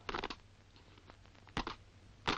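A section of soldiers carrying out a drill movement on a parade square: boots striking the ground and rifles and kit clattering. It comes in two short bursts of sharp knocks, one at the very start and another about one and a half seconds in, over the steady low hum of an old film soundtrack.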